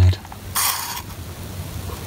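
A short crinkling rustle of a clear plastic bag being handled, lasting about half a second and starting about half a second in.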